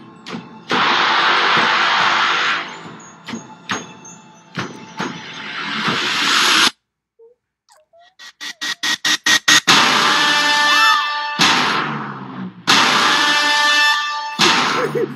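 Horror film teaser soundtrack: dark music with loud noisy swells, cut off suddenly about seven seconds in. After a moment of silence, a run of quick pulses speeds up into another loud swell.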